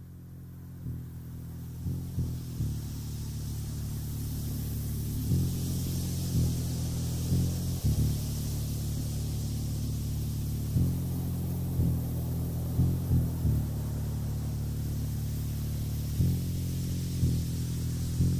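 Dark dungeon synth music fading in: low, sustained synthesizer keyboard notes that shift every second or two, under a steady hissing noise layer that swells in a few seconds in.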